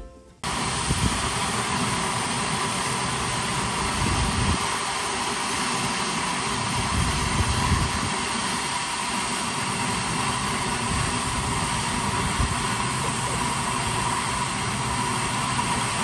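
Man-made geyser erupting: a steady rushing hiss of a tall water jet and its spray, starting suddenly just under half a second in.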